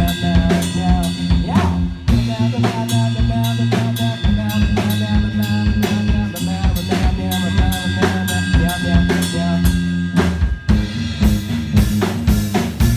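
Live band playing: a drum kit keeping a steady beat of about four hits a second on bass drum and snare, over sustained low electric-bass notes.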